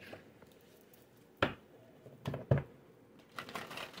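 Oracle or tarot cards being handled: a sharp card snap about a second and a half in, two more a second later, then a short rustle of cards near the end.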